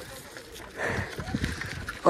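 A bicycle being ridden over a rough road: the frame rattles and clatters over the bumps while wind buffets the microphone. The noise swells about a second in.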